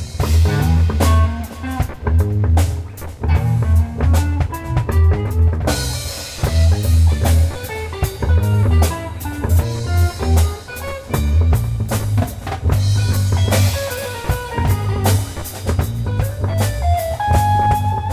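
Instrumental jazz-fusion band playing: drum kit with busy cymbal and drum strokes, a strong moving bass line, and guitar. A high note is held for about a second near the end.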